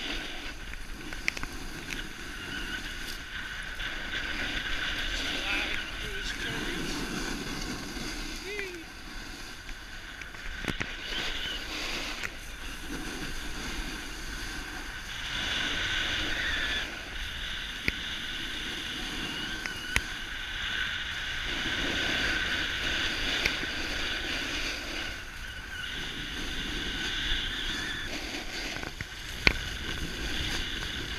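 Wind rushing over the microphone and the scrape of edges carving across packed snow as the rider descends, swelling and easing every few seconds with the turns, with a few sharp clicks.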